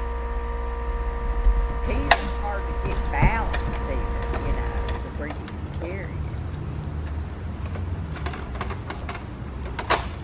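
A pressure washer's engine running with a steady low drone and hum, under a few indistinct voices. About halfway it cuts to a quieter, duller low rumble.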